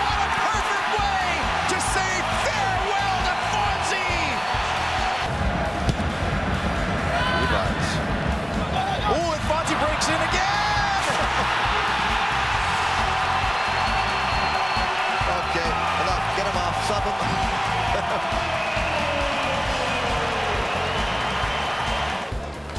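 A stadium crowd cheering a goal, mixed with background music that has a steady beat.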